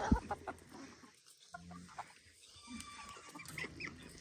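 Chickens clucking quietly now and then, with a low thump right at the start.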